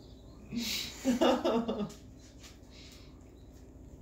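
A short breathy huff, then a brief pitched vocal sound lasting under a second, then a quieter stretch with a few faint light clicks.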